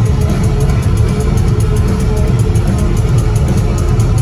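Rock band playing live at loud volume, electric guitar and drums, heard from the audience with a heavy, bass-dominated low end.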